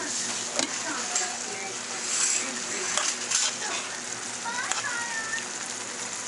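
Thin-sliced steak and onions sizzling in a pan as they brown. A metal utensil stirs them, clicking against the pan a few times.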